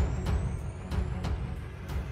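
Intro theme music: a heavy, low beat hitting about three times a second under a high tone that rises steadily in pitch.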